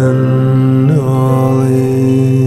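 Music from a song: a male voice holds one long sung note, steady in pitch with a slight waver about a second in.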